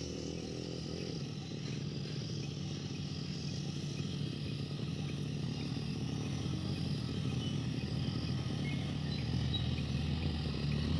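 Motorcycle engine running steadily as the bike approaches, growing gradually louder. A faint high chirp repeats about once a second behind it.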